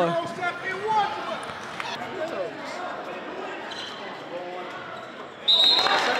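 Basketball game sound in a gym: scattered voices of players and spectators, with a basketball bouncing on the hardwood floor. About five and a half seconds in, a sudden louder burst cuts in, led by a short high tone.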